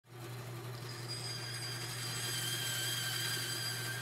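A small motor running steadily with a whirring sound: a low hum under several steady high-pitched whines and a hiss, fading in at the start.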